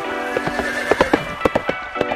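Music playing, with a horse whinny and a run of sharp hoof clops over it in the middle.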